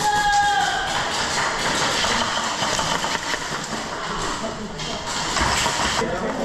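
Indistinct chatter of many airsoft players talking at once in a reverberant indoor hall, with a steady high tone that stops about a second in.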